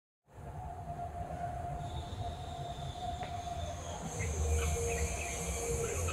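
Steady low background rumble and hum, with a few short, faint bird chirps in the second half.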